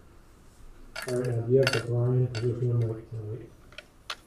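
A man's voice, talking or murmuring for about two seconds without clear words, over a few short, sharp clicks, the last ones just before the end.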